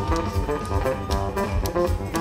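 Electric bass guitar solo, played live through the venue's sound system: a quick run of short plucked notes with a heavy low end.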